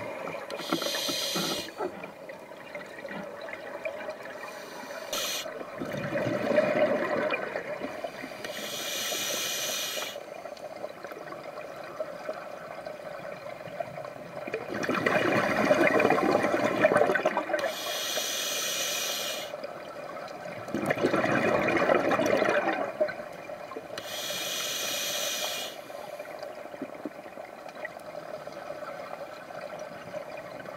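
Scuba diver breathing through a regulator underwater: short hissing inhalations alternate with longer bursts of bubbling exhalation, a few slow breaths in all.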